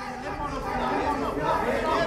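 Several voices of the fight crowd calling out and chattering over one another, growing louder through the moment.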